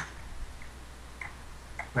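A few faint computer keyboard key clicks, about half a second apart, over a low steady hum.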